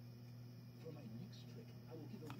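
Quiet room tone with a steady low electrical hum, and a faint, indistinct murmur of voice from about halfway in.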